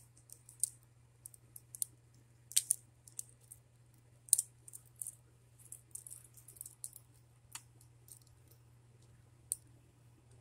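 Small plastic Bakugan toy balls clicking as they are handled and snapped open, with irregular light clicks and a few sharper ones about two and a half and four and a half seconds in.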